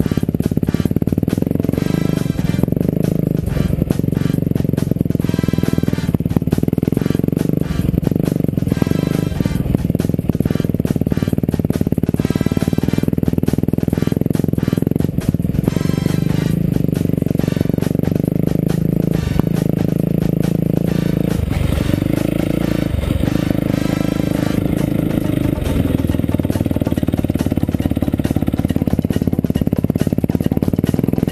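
450 cc dirt bike engine running at a fairly steady pace, with music over it.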